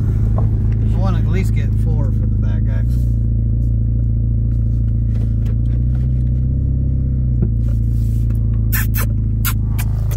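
Chevy Malibu heard from inside its cabin while driving: a steady, loud low drone of engine and road noise. A few sharp clicks come near the end.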